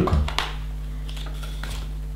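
A few light clicks and rustles of hands handling LEGO bricks and turning a page of the paper instruction booklet, over a steady low hum.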